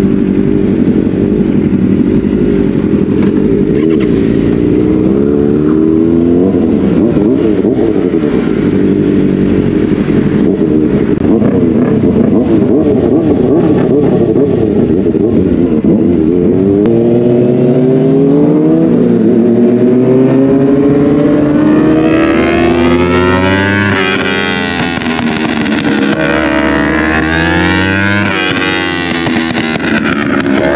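Kawasaki Ninja sport-bike engines, a tuned ZX-4RR inline-four among them, running at low revs. About halfway through they rev up in rising sweeps that climb and drop several times as the bikes pull away and accelerate through the gears.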